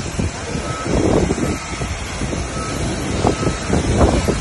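Outdoor machinery noise: an engine running with wind buffeting the microphone, and a faint high beep repeating roughly once a second.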